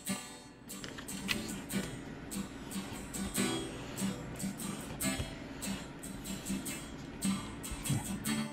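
Soft background music played on acoustic guitar, a steady run of plucked notes.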